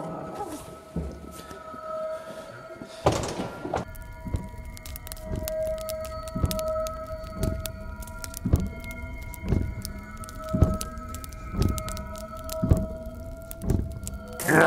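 Eerie background music of sustained droning tones that swell and slide slightly in pitch. A whoosh comes about three seconds in, and after it a heavy thudding beat about once a second.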